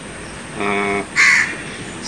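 A crow cawing twice in quick succession, a held call followed by a shorter, harsher one.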